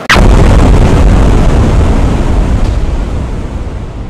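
A rocket explosion sound effect: a sudden loud blast, then a long, low rumble that slowly dies away over the next few seconds.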